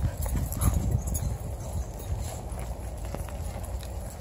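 Footsteps of a person and two dogs walking on asphalt: irregular scuffs and clicks of shoes and claws, over a steady low rumble.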